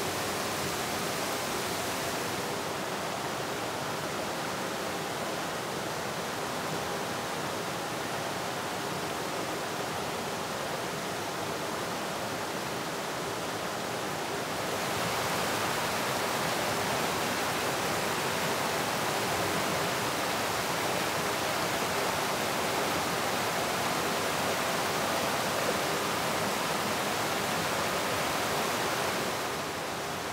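Shallow mountain stream flowing over smooth bedrock slabs, a steady rushing of water. About halfway through it gets louder and brighter, where the water sheets over the rock close by, then drops back near the end.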